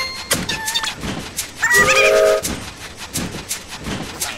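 Cartoon toy steam train chugging in an even rhythm of about three puffs a second. Its whistle blows for about half a second around two seconds in, the loudest sound.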